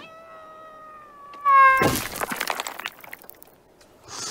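A cartoon cat's long drawn-out yowl, one held cry falling slightly in pitch and growing loudest just before it breaks off, cut short about two seconds in by a loud crash and about a second of clattering that dies away.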